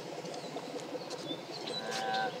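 Quiet outdoor background noise with a few faint bird chirps.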